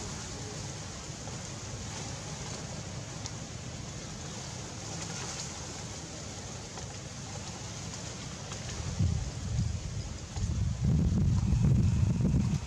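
Wind on the microphone outdoors, a steady low rumble that swells in stronger gusts in the last few seconds.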